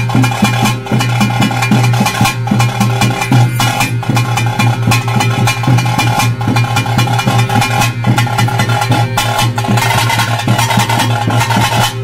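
Loud bhuta kola ritual music: fast, dense drum strokes over steady held tones, growing brighter in the high end near the end.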